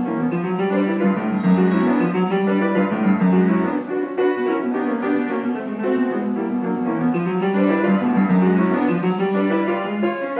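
An upright piano played without a break, held low notes under a busy line of higher notes.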